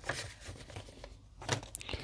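Paper instruction sheet rustling as it is handled and set down, with a few light clicks of a hard plastic model car body being picked up about a second and a half in.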